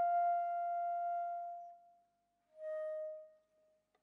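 Soft contemporary chamber music for alto flute, violin and piano. A long, pure held note fades out about halfway through. After a short silence, a slightly lower held note swells and dies away.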